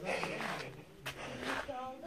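Faint voices, well below the level of the surrounding talk.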